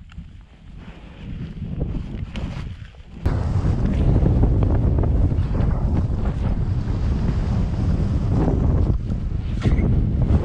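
Wind buffeting the camera microphone, moderate at first and then suddenly loud and steady from about three seconds in, as the paraglider pilot runs down the snow slope to launch and the airflow over the microphone rises.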